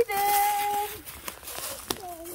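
A high voice holds one level note, like a drawn-out "ooh", for most of the first second. After it come a few light crunches of footsteps in dry leaf litter.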